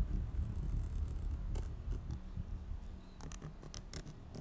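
Computer keyboard typing: a single key click, then a quick run of keystrokes in the last second, over a low rumble that eases off.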